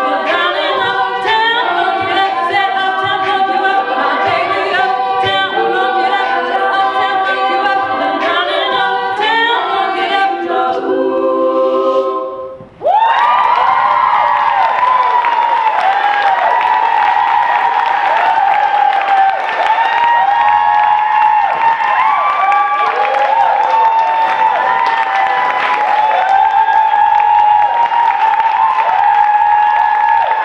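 All-female a cappella group singing, a lead voice over layered backing harmonies, breaking off suddenly about twelve seconds in. Then a loud, dense mix of cheering and applause with many high voices whooping.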